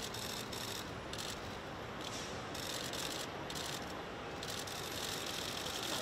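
Steady outdoor background noise, with short bursts of faint high-pitched rattling clicks that come and go about every second.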